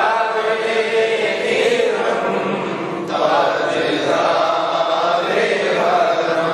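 Male voices chanting a devotional recitation together in long melodic phrases, a new phrase starting about three seconds in.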